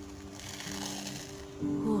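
Background music with steady held notes. About half a second in, a brief dry rasp as a peel-off face mask is pulled away from the skin. Near the end comes a short vocal groan.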